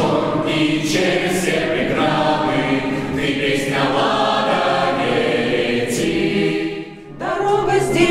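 Mixed choir singing a cappella, sustained chords in a slow phrase. The phrase breaks off for a moment about seven seconds in, then the next one begins.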